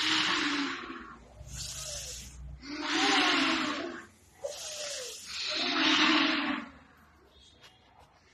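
A group of children taking three deep breaths together for a yoga breathing exercise: three long, loud breaths with quieter breaths between them, each about a second long.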